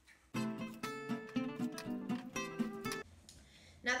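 Acoustic guitar music, a quick run of plucked notes that starts just after the beginning and cuts off about three seconds in.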